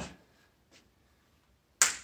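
A single sharp snap made with the hands about two seconds in, quick to fade. Before it, only faint room quiet.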